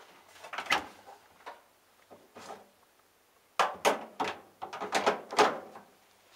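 Door of a Hotpoint Aquarius+ TVF760 tumble dryer being pulled open and handled: sharp clicks and knocks, a first group about a second in and a louder run of clatters past the middle.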